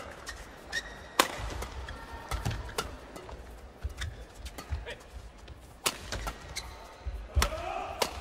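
Badminton doubles rally: shuttlecock struck hard by rackets in a string of sharp cracks, about six over the span, one every second or so. Shoes squeak briefly on the court floor and feet thud between shots.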